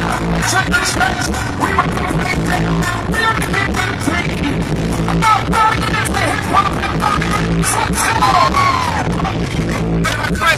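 Live hip-hop concert music over a PA system, heard from the audience seats: a steady drum beat and heavy bass with vocals over it.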